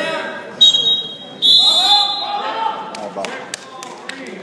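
Two shrill blasts of a referee's whistle stopping the wrestling action: a short one, then a longer one lasting about a second. A few sharp thuds follow near the end.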